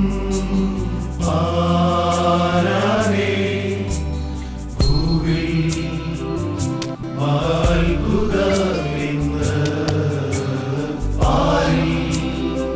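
A men's choir singing a Christmas song in unison over instrumental accompaniment with a steady percussion beat.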